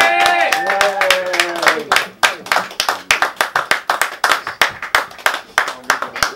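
The band's last held note on harmonica and acoustic guitars rings out and fades over the first two seconds, then a small audience claps: separate, sharp claps from a few people.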